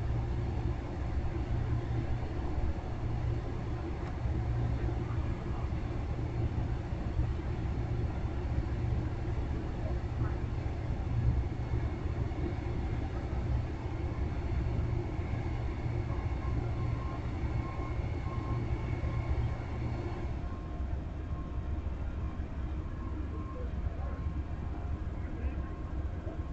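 Passenger train cars rolling slowly past on jointed rail, with a steady low rumble of wheels on the track. A faint high whine runs through the middle, and the sound thins out near the end as the last cars go by.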